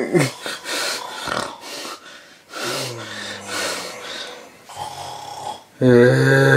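A man's voice doing exaggerated, mock snoring: hissing breaths, then two low, buzzing snores in the second half.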